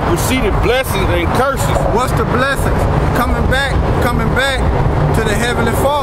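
A man talking, his words unclear, over a steady low rumble.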